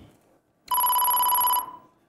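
Quiz-show electronic beep: one steady, pure-sounding tone lasting just under a second, starting partway in. It is the cue for a letter being revealed on the word board, with 100 points taken off the question's value.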